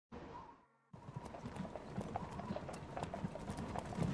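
Hooves of a horse pulling a cart clip-clopping at a steady pace, starting about a second in and growing louder as it approaches.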